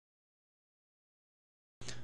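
Dead silence. Near the end, a steady background noise with a low hum cuts in suddenly.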